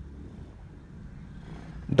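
Low, steady rumble of a parked car's cabin, with no sudden events.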